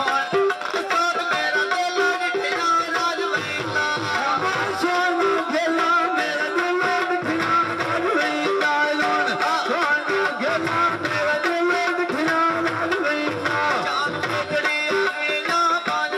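Live Punjabi folk music in the mahiye style: a melody instrument plays short repeated phrases over a steady hand-drum beat.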